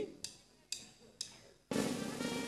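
Three sharp strikes on a drum kit, about half a second apart, then the live band starts playing near the end.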